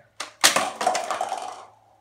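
Nerf Zombie Strike Dreadbolt toy crossbow firing: a light click, then a sharp snap as the spring-powered bow arms release about half a second in. A rattling clatter follows for about a second as the foam-tipped arrow lands and skids across the laminate floor.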